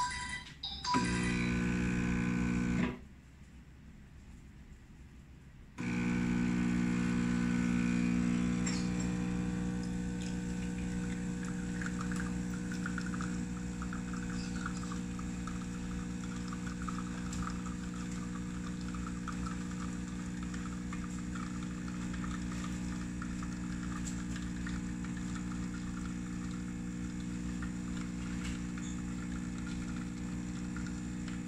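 SMEG espresso machine's pump buzzing steadily as it pulls an espresso shot, with coffee trickling from the portafilter spouts into two glass cups. The pump runs for about two seconds near the start, drops away for about three seconds, then runs without a break.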